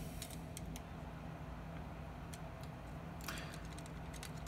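Faint, scattered clicks and a brief rustle from a plastic Machine Robo Mugenbine combining robot figure being turned over in the hands, over a low steady hum.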